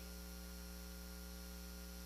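Faint, steady electrical mains hum with a thin hiss.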